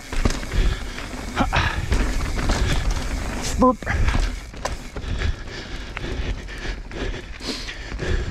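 Mountain bike descending a dirt forest trail at speed: tyres rolling over dirt with rattles and knocks from bumps, over a steady low rumble of wind on the microphone. The rider grunts, and gives a short pitched "boup" about halfway through.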